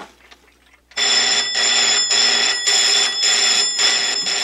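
Electric telephone bell ringing loudly and continuously from about a second in, with short breaks roughly every half second.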